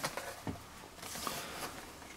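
Faint handling noise of a small cardboard box being turned over in the hands, over quiet room tone.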